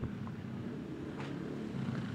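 Low, steady rumble of street traffic in the background during a pause in conversation.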